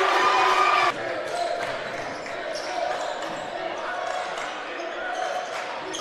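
Gymnasium game sound: bench and crowd cheering a made three-pointer, cut off abruptly about a second in. Then quieter court sounds follow, with a basketball bouncing on the hardwood floor.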